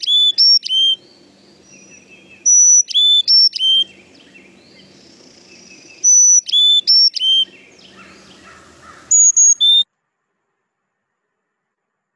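Recording of a Carolina chickadee singing its four-part song, clear whistled notes alternating high and low, repeated three times, followed by a short higher-pitched phrase near the end before the recording cuts off.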